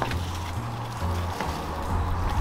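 Background music with a low bass line that steps between notes about every half second.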